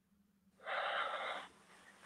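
A single audible breath, starting about half a second in and lasting just under a second, drawn by a man pausing to think before he answers.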